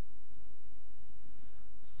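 Faint computer mouse clicks over a steady low hum, with a short breathy hiss near the end.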